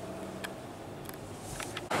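Faint, steady vehicle engine hum heard from inside a car cabin, with a few light clicks. Near the end it cuts suddenly to louder outdoor noise.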